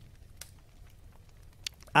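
A man sipping a drink from a wine glass close to a handheld microphone: faint swallowing with two small clicks, over a low hum, then a satisfied "ah" at the very end.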